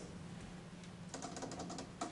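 Typing on a laptop keyboard: a quick run of keystrokes about a second in.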